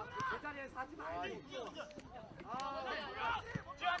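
Voices shouting across an open football pitch, several separate rising-and-falling calls, quieter than close speech, with a few faint knocks.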